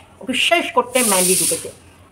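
A woman's voice speaking, with a drawn-out hissing 'sh' sound over the words lasting about two-thirds of a second, about a second in.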